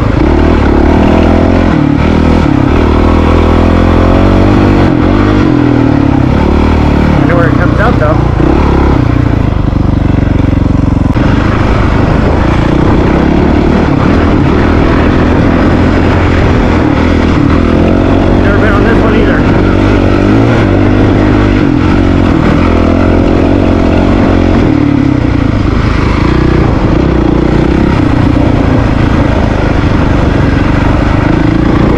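Honda CRF450RL's single-cylinder four-stroke engine running loud under way, its revs rising and falling with the throttle as the bike is ridden.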